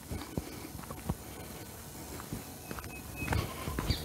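Footsteps of a person walking down a dirt walking track: uneven steps a few tenths of a second apart.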